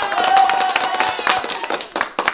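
Applause: many hands clapping, with a held high-pitched cheer over it that stops a little over a second in.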